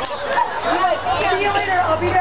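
Spectators' chatter, several voices talking at once without clear words.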